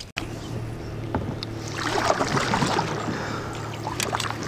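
Water sloshing and lapping against a plastic fishing kayak's hull on a lake, swelling briefly in the middle, over a steady low hum.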